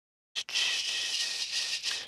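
A short click, then a breath close to the microphone lasting about a second and a half, leading straight into speech.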